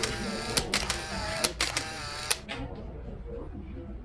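A rapid run of camera shutter clicks, several sharp clicks in quick succession over the first two and a half seconds, with voices of the gathered crowd behind them; the background then fades toward the end.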